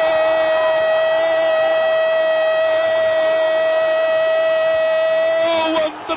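A male radio commentator's long, drawn-out goal cry, one steady high note held for almost six seconds before it breaks off near the end.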